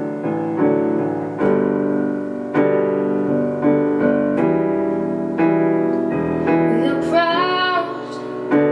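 Digital piano playing a slow intro of sustained chords, struck about once a second. A woman's singing voice comes in near the end.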